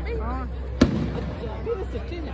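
A single sharp firework bang a little under a second in, heard over people's voices.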